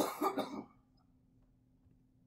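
A man clears his throat once, a short rough burst of about half a second at the start. After it there is only a faint steady hum.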